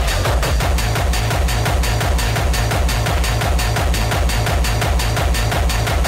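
Early rave/techno music mixed from vinyl on turntables: a fast, steady electronic beat with heavy repeating bass pulses and evenly spaced crisp percussion, running continuously.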